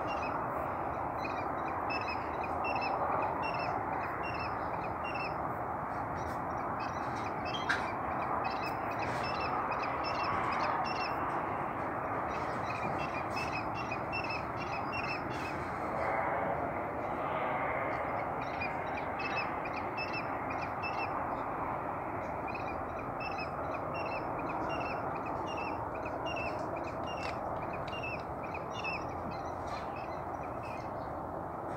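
A bird calling: short high chirps repeated about two to three times a second, thinning out midway, over a steady rushing background noise.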